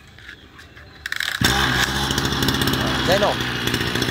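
Small two-stroke, air-cooled brush cutter engine with a spring-assisted recoil starter, pull-started: a few starter clicks, then it catches about a second and a half in and keeps running steadily.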